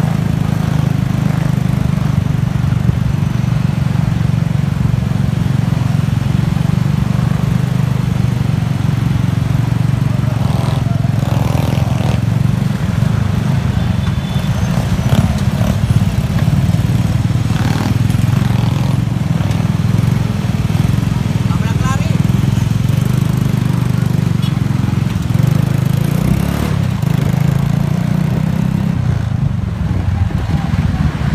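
Steady drone of motor scooter engines, heard from aboard one of a group of scooters riding together, with voices heard at times.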